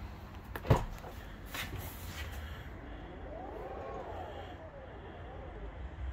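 Tesla Model X falcon wing door opening under power: a sharp click about a second in, then the door motor whining, rising and falling in pitch as the door lifts, with a second, shorter whine near the end.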